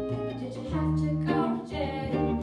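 A girl singing through a microphone, accompanied by a plucked upright double bass and an electric guitar, in a small live trio.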